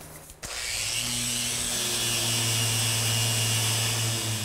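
Festool detail sander with a triangular pad and vacuum dust extraction, sanding the hardwood floor with 36-grit paper. It starts about half a second in and then runs steadily: a low hum with a hiss on top.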